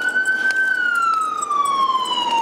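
Emergency vehicle siren wailing: one loud rising-and-falling tone that peaks about half a second in, then slowly falls in pitch.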